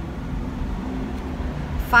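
Car idling in a drive-through queue, heard from inside the cabin as a steady low rumble.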